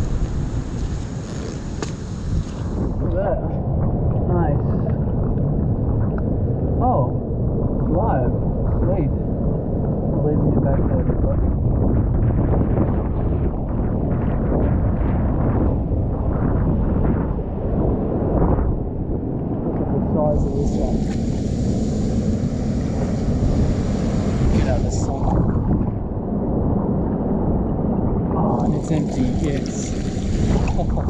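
Strong wind buffeting the microphone in a steady low rumble on a rocky seashore, with a few stretches of brighter hiss from washing seawater near the start, about two-thirds of the way through and again at the end.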